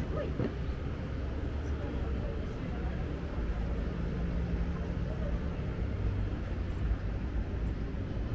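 Steady low rumble of city traffic and street ambience, with brief voices of passersby near the start.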